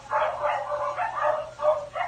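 A high-pitched voice speaking a short answer in broken syllables, pitched well above an adult woman's voice.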